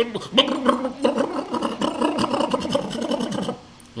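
A man's voice, vocalising or speaking rapidly without words the recogniser could make out, breaking off about three and a half seconds in.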